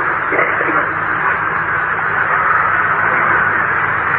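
Steady hiss and noise of an old, narrow-band recording, like radio static, with faint indistinct voices in it early on.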